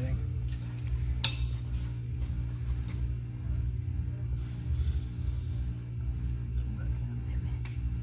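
Steady low hum, with one sharp metallic click about a second in from small parts being handled on an aluminium transmission valve body.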